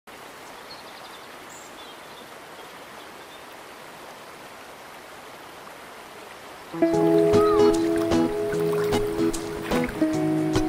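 Steady rush of flowing river water, then background music with held tones starts abruptly about seven seconds in and is the loudest thing.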